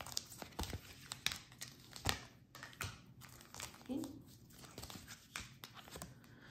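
A stack of round oracle cards shuffled and handled by hand: a run of irregular light clicks and taps as the card edges slide and knock together.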